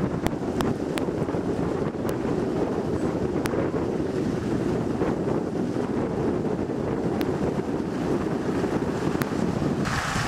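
Wind buffeting the microphone as a steady low rumble, with a few faint clicks.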